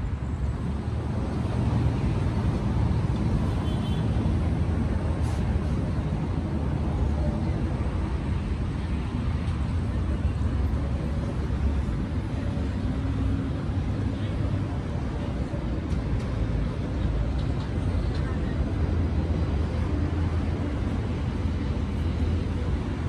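Steady low rumble of outdoor city ambience, heaviest in the bass, with no distinct events.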